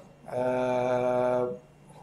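A man's voice holding a single steady vowel-like hesitation sound for about a second, flat in pitch, between phrases of speech.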